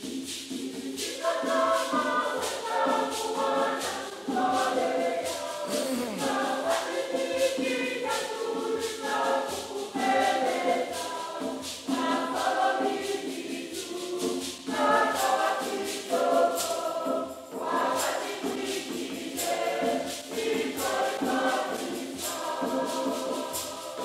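Mixed church choir singing a Swahili hymn in parts, with a steady percussion beat under the voices.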